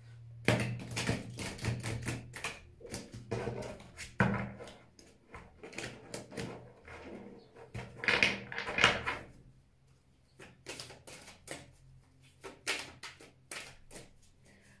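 A deck of oracle cards being shuffled by hand: a busy run of quick papery clicks and slaps, loudest around eight to nine seconds in and sparser after about ten seconds.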